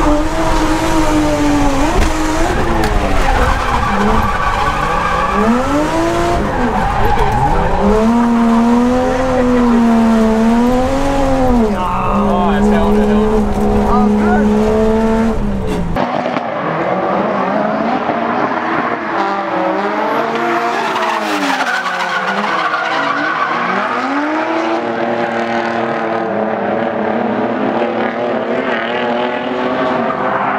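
Toyota Chaser JZX100 drift car's engine revving hard up and down through repeated drifts, held high for a few seconds at a time, with tyres squealing, heard from inside the cabin. About halfway through, the sound switches to trackside: the engine is thinner and more distant as the car drifts past.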